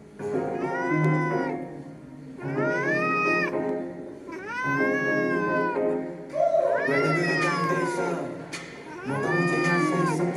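Ginger domestic shorthair cat meowing five times. Each meow is long and drawn out, about a second, rising and then falling in pitch. Music plays underneath.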